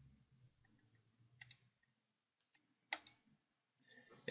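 A handful of faint computer-mouse clicks over near silence, the loudest about three seconds in.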